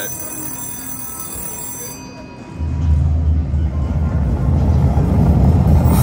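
Ultimate Fire Link Explosion slot machine playing its bonus-trigger sound effects: faint steady electronic tones, then about two and a half seconds in a loud, deep rumble that holds as the fireball transition plays.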